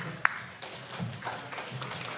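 Low murmur of many diners talking in a banquet room, with one sharp clink of tableware about a quarter-second in.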